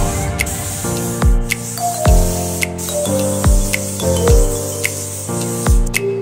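Background music with a thudding beat, laid over the steady hiss of a compressed-air paint spray gun spraying. The hiss cuts off at the very end.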